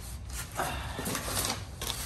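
Paper rustling and crinkling as a folded instruction sheet is picked up and handled among the box's packaging, starting about half a second in.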